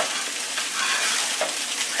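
Fried rice sizzling steadily in a hot skillet while it is stirred with a spatula. The sizzle means everything is getting warmed through.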